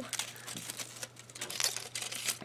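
Foil wrapper of a chocolate ball crinkling as it is peeled off and handled, in quick irregular crackles.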